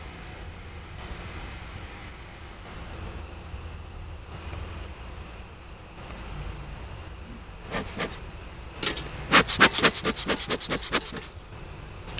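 Honeybees buzzing over an open hive's frames. About eight seconds in comes a quick run of sharp clicks and knocks lasting a few seconds, from the wooden hive frames and equipment being handled.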